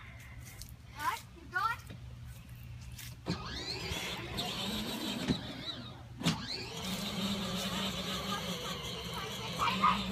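Battery-powered ride-on toy Jeep's electric motor and gearbox whining steadily as it drives over grass, louder from about three seconds in. Children's voices come in briefly early on.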